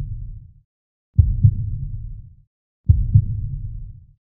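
Deep, booming heartbeat sound effect: low double thumps (lub-dub) recurring a little under every two seconds, each fading away over about a second.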